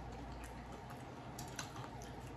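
Faint, scattered clicks and light crackles of crisp tortilla chips being picked apart by hand from a loaded nacho platter, over a low steady room hum.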